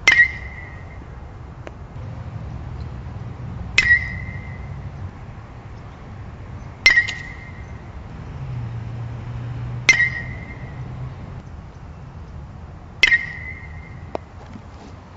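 Metal baseball bat hitting tossed balls: five sharp metallic pings about three seconds apart, each ringing briefly at one high pitch.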